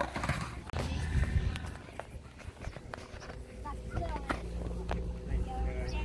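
Hollow plastic bowling pins knocking and clacking against each other and the ground in a scatter of separate knocks as they are stood back up on grass.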